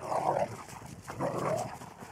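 A dog giving two short, quieter vocal sounds, one at the start and one about a second in.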